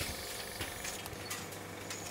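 Ampoule filling and sealing machine running: a steady low hum with light, irregular ticking of glass ampoules and machine parts.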